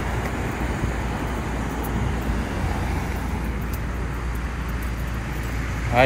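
Steady low rumble and hiss of passing road traffic, even throughout.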